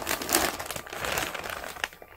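Clear plastic bag wrapped around a plush toy crinkling as it is handled and lifted up, a dense rustle that thins out near the end.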